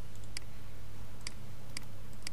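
Computer mouse clicking: three short, sharp clicks over a low steady hum.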